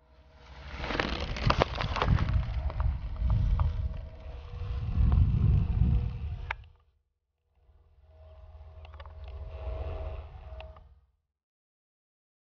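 Outdoor rumble, like wind buffeting the microphone, with scattered clicks and a faint steady hum. It cuts off sharply about seven seconds in, comes back more quietly for about three seconds, then stops.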